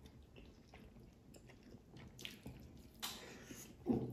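Faint eating sounds: chewing and fingers working rice on china plates, with a few small clicks and soft rustles.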